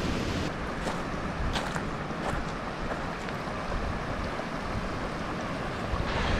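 Steady wind and distant surf noise on the open shore, with a low wind rumble on the microphone and a few faint clicks.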